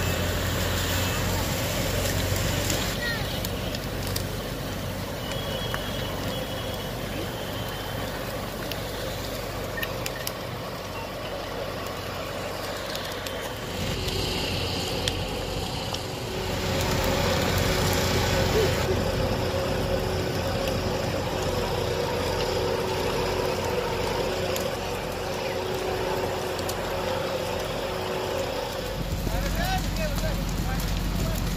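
Steady mixed noise at a burning house: a fire engine running to feed the hose line and the fire burning, with indistinct voices. The sound changes in character about 14 and 17 seconds in, and a faint steady hum runs through the second half.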